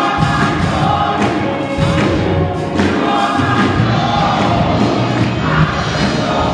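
Gospel choir singing a lively, happy song, many voices together, with occasional thumps under the singing.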